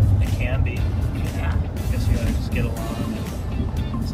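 Steady low rumble of a moving car heard from inside the cabin, with music and bits of conversation over it.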